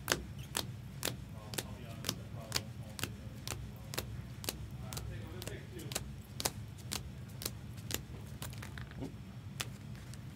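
Trading cards in rigid plastic holders clicking against one another as a stack is flipped through card by card, about two sharp clicks a second, over a low steady hum.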